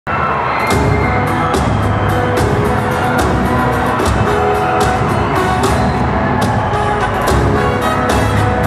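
Live band playing an instrumental introduction: held chords with a sharp drum hit a little under once a second.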